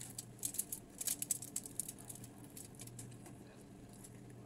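Crispy fried tilapia crackling as it is torn apart by hand: a quick run of small, sharp crackles from about half a second to two seconds in, then a few scattered ones, over a faint low steady hum.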